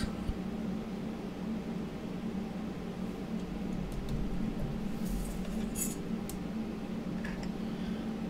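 A steady low hum with a few light clicks and taps about five to six seconds in, from hands handling a sheet of polymer clay and a metal clay blade on the work surface.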